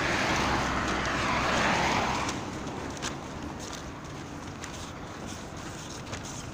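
A car passing on a wet road, its tyre hiss swelling and then fading away after about two seconds.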